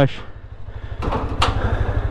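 Motorcycle engine running with a low, even pulse, and a single sharp click about one and a half seconds in.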